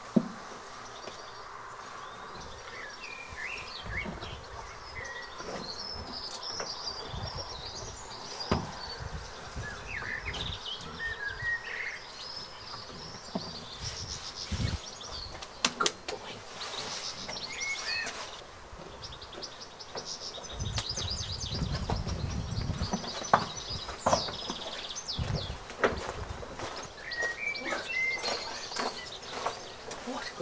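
Small birds chirping and singing throughout, with occasional sharp knocks and clicks and a short low rumble about two-thirds of the way through.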